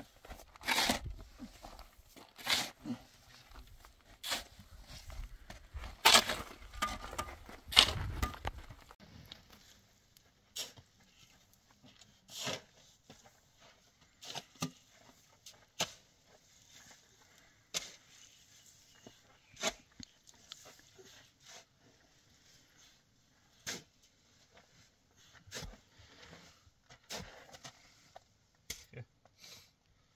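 Shovels scraping and digging into heaps of sand and gravel, a string of separate scrapes that are loud and frequent for the first several seconds, then sparser and fainter.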